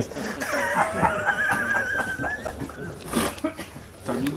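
Someone laughing: a long, high-pitched, pulsing laugh that fades out about three seconds in.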